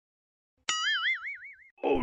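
Cartoon 'boing' sound effect: a sudden twang, then a ringing tone that wobbles quickly up and down in pitch and fades after about a second.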